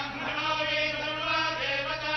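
Group of Hindu priests chanting mantras together in long, steadily held notes.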